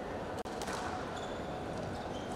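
Squash rally: a sharp crack of the ball struck off racket and wall about half a second in, then a short high squeak of a court shoe a little after one second, over the steady hum of the hall.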